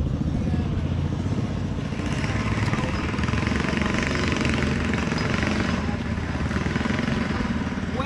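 The 212cc single-cylinder four-stroke engine of a motorized kayak running steadily on the water.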